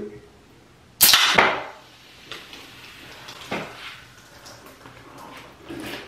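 Aluminium soda can pull-tab cracked open about a second in: a sharp snap followed by a short hiss of escaping carbonation, with a second smaller hiss just after.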